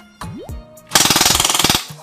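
A rapid full-auto burst from an airsoft pistol fitted with a tracer unit, a fast run of sharp shots lasting just under a second, starting about a second in. It is preceded by a short rising tone.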